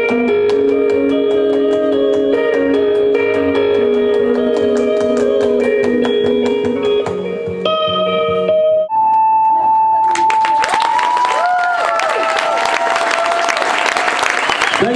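Live band music: electric guitar and sustained sung notes over a steady clapped beat, which breaks off about nine seconds in. The crowd then applauds, with voices, to the end.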